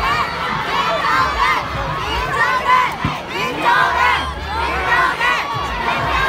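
A crowd of fans cheering and shouting, with many high-pitched voices overlapping.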